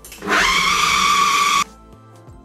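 Electric food processor running a short burst on raw minced chicken with egg and spices. It spins up with a rising whine a moment in, holds a steady high whine, and cuts off suddenly about a second and a half in.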